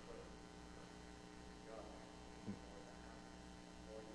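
Near silence: a steady electrical mains hum, with a faint far-off voice and one brief faint sound about two and a half seconds in.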